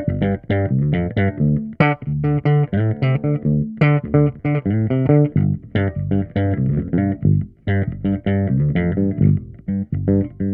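Gibson ES-Les Paul Bass played aggressively on its bridge pickup through a Trace Elliot Elf 200-watt bass head and a 1x10 cabinet: a fast run of plucked notes, about four a second, with a few notes held longer.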